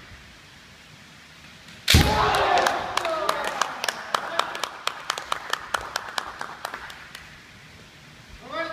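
Kendo sparring: about two seconds in, a loud shinai strike with a foot stamp on the wooden floor and shouted kiai that carry on for a couple of seconds, followed by a run of quick sharp clacks, several a second, that die away near the end.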